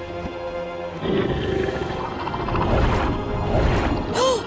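Tense background music, joined about a second in by a low, rumbling sea-monster roar sound effect that stays loud to the end.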